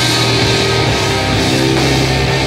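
Hardcore punk band playing live: distorted electric guitar, electric bass and drum kit, loud and continuous.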